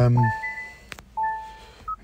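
Electric car's dashboard chime sounding twice, about a second apart, each a clear bell-like tone that dies away, with a click between them and a short higher beep near the end.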